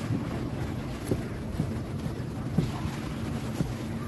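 Heavy knife chopping tuna meat into chunks on a thick wooden chopping block: a dull thud every second or so, over a steady low rumble of wind on the microphone.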